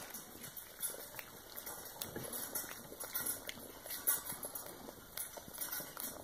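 Pug chewing a treat, its mouth making an irregular run of small clicking and smacking sounds.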